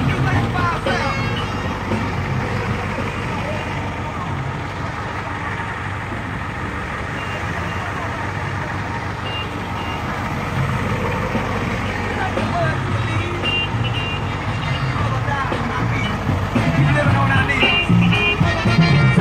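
Flatbed tow truck's engine running steadily, with music playing more faintly beneath it.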